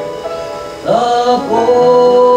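Men's close-harmony barbershop singing: a held chord fades into a brief lull, then the voices come back in about a second in with sliding pitches and settle into a loud, sustained chord.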